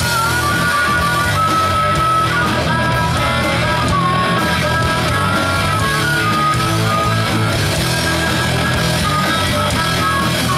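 Live rock band playing an instrumental passage: electric guitars, bass guitar and drums, with a harmonica played into a vocal mic carrying a wavering lead line above the band.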